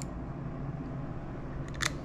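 Quiet handling sounds as a screw and screwdriver are set into a plastic snowmobile brake reservoir, over a steady low hum. One short, sharp click comes near the end.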